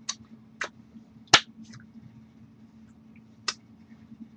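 Hands striking and tapping each other while signing in sign language: four short, sharp claps or taps, the third, about a second and a half in, the loudest, over a steady low hum.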